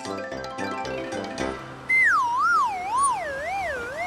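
Light children's background music with a simple melody. About two seconds in, it gives way to a loud whistle-like cartoon sound effect that wobbles up and down while gliding downward in pitch, marking the crane lowering a cone into place.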